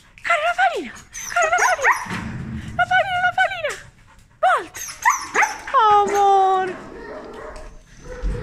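A young Samoyed-type dog whining and yipping: a string of short high cries that rise and fall, with one longer drawn-out whine about six seconds in.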